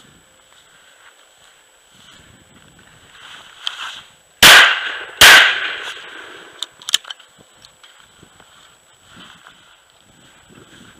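Shotgun fired twice in quick succession, two loud sharp reports about three-quarters of a second apart, each trailing off. A couple of light sharp clicks follow about a second and a half later.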